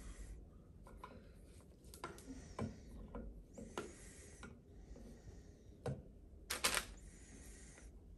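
Scattered scrapes and clicks of a metal tool prying at the lid of a gallon can of primer, with one louder, sharper clack about six and a half seconds in.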